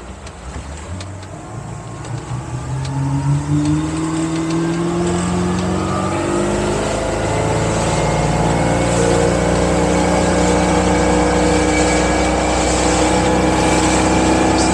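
Mercruiser MPI sterndrive boat engine throttled up from idle, its pitch rising steadily for about five seconds and then holding at high revs as the boat climbs onto plane. It pulls cleanly with no bucking or stalling, now that the engine-compartment blower is venting heat. Wind and water rush grow with speed.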